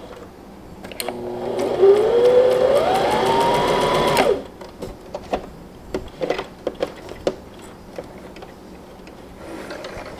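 Brother MZ53 sewing machine stitching a straight seam. The motor starts about a second in, its whine rising in pitch as it speeds up, then stops suddenly about three seconds later. A few light clicks follow as the fabric is handled.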